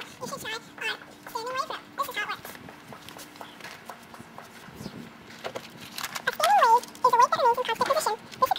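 Speech only: girls talking, in two stretches with a pause of a few seconds in the middle, the second stretch louder.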